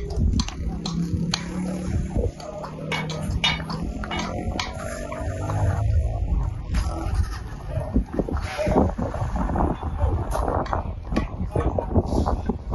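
Indistinct voices over outdoor background noise, with scattered short clicks.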